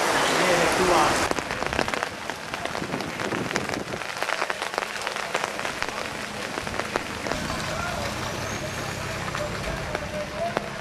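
Rain falling, with many separate drops clicking sharply on hard surfaces close by. A louder wash of rain mixed with a voice in the first second cuts off suddenly, and faint voices come in near the end.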